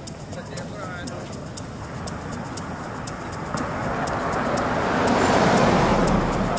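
Ambient electronic track built from field-recording textures: a patter of crackling clicks over a low hum, with faint voice-like fragments early on. A wide noise swell, like traffic going by, builds from about halfway and peaks near the end.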